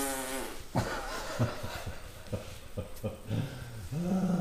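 A buzzy, wavering fart noise in the first half-second or so, followed by short bursts of laughter.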